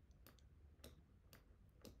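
Near silence with faint, evenly spaced ticks, about two a second.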